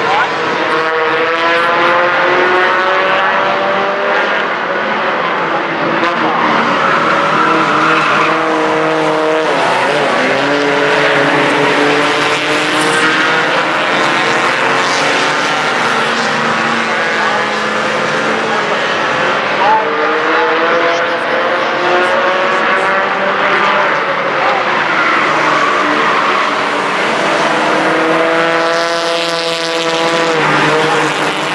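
Four-cylinder Four Fun class stock cars racing on a short oval track, several engines at once, their pitch rising and falling as they accelerate, lift and pass.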